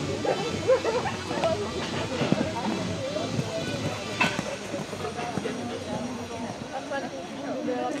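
Indistinct voices, too unclear to make out, over a steady background hiss, with one sharp click about four seconds in.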